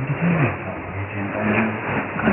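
Shortwave AM broadcast from NBC Bougainville on 3325 kHz, received weak through a steady hiss of static, with muffled audio that stops above about 3.5 kHz. Under the noise a voice sings held and gliding notes.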